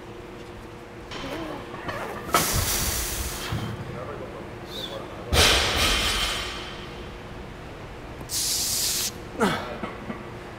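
A weightlifter setting up and unracking a loaded barbell for a high-bar squat. Two sudden, loud, noisy bursts come a few seconds apart, then a short sharp hiss of breath through the teeth near the end as he braces.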